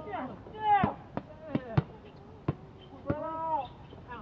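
A basketball bouncing on an outdoor court, about five sharp bangs over two seconds, mixed with players' loud shouted calls.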